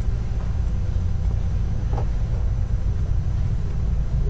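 A steady low rumble and hum, with a faint brief sound about two seconds in.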